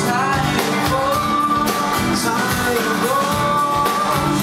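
Live band music: male singing in long held, gliding notes over strummed acoustic guitar and a drum kit.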